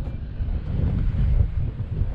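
Wind buffeting the camera microphone over the low rumble of a Triumph Speed Triple 1050's three-cylinder engine as the bike pulls away at low speed.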